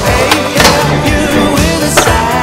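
Skateboard wheels rolling over concrete with a few sharp clacks of the board, under a loud rock soundtrack with singing.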